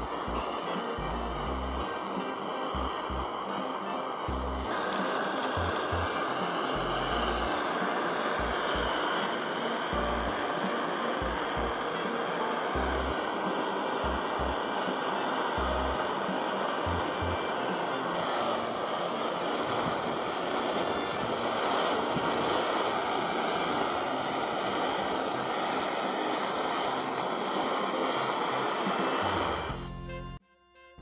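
Portable gas camp stove burner running with a steady roar while gas leaks from the base of its valve adjustment shaft and the flame is unstable, under background music.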